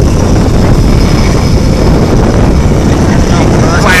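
Fighter jet engines running at high power close by, a loud, unbroken roar that nearly overloads the recording.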